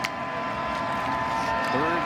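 Background noise of a televised college football game: an even hum of stadium noise with a steady held tone running under it. A man's voice comes in near the end.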